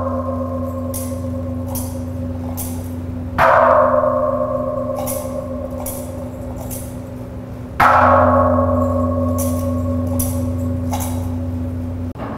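Deep-toned altar chime struck at the elevation of the consecrated host, twice about four seconds apart, each strike ringing on and fading slowly.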